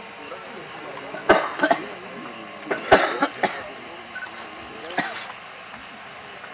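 A murmur of voices in a gathering, broken by a handful of short, sharp sounds, the loudest about a second and a half and three seconds in, with a last one near five seconds.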